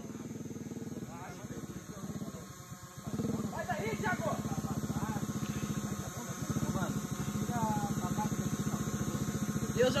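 Motorbike engine running at a distance with a steady, even pulse, becoming louder about three seconds in. Faint voices are heard in the background.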